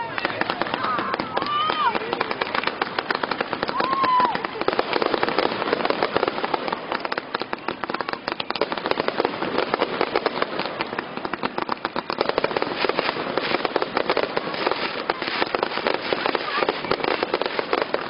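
Fireworks display: a dense, continuous crackle of many rapid pops and small bangs from bursting shells.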